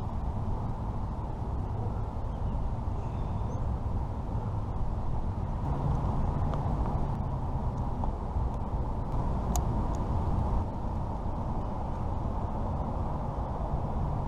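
Steady low outdoor rumble, with a few faint clicks from a caulking gun being squeezed.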